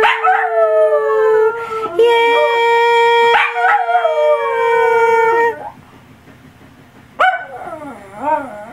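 A miniature schnauzer howling: two long held howls, each with the pitch sliding down at its start, which stop about five and a half seconds in, then a short yelping howl near the end.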